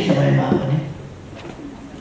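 A man speaking into a microphone for about the first second, then a pause in his speech.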